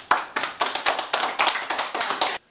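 Hand clapping, quick and uneven at about seven claps a second.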